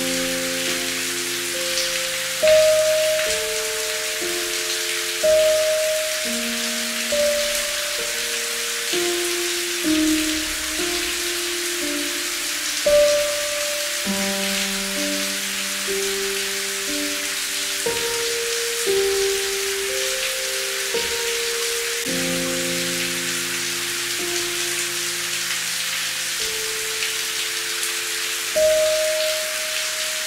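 Steady rain hiss with a slow, soft instrumental melody over it, its notes held and overlapping and changing every second or two.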